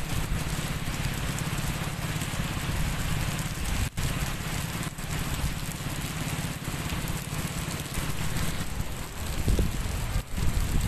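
Steady rain falling, an even hiss of drops on the ground and river, with a low rumble underneath.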